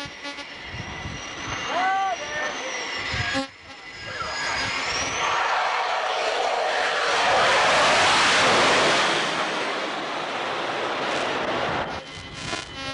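Jet noise from a twin-engine Navy carrier jet climbing away, swelling to its loudest about eight seconds in and then easing off, with a thin high whine in the first few seconds.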